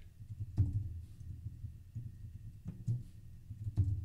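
A few scattered computer keyboard keystrokes, short dull taps with a click, over a steady low room hum.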